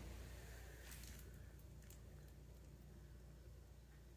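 Near silence: room tone with a steady low hum and a couple of faint soft clicks about one and two seconds in.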